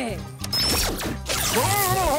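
Cartoon ray-gun zap sound effect of the memory-zapper firing: a loud crackling burst with sweeping whistles about half a second in, followed by a wobbling pitched warble, over background music with a steady bass beat.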